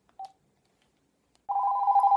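Cordless phone handset giving a short beep, then starting to ring about one and a half seconds in with a rapid electronic warble: an incoming call.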